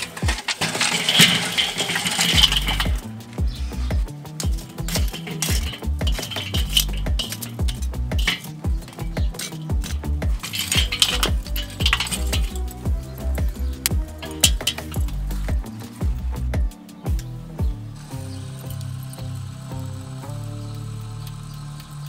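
Hot hardwood lump charcoal tipped from a chimney starter onto a Weber kettle grill's metal grate and then pushed about by hand, the pieces clinking and rattling against each other and the grate in many sharp clicks. Background music plays throughout, and the clinking stops a few seconds before the end, leaving only the music.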